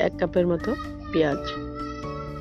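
A woman speaking Bengali over background music; her speech stops about one and a half seconds in, leaving the music's steady held tones.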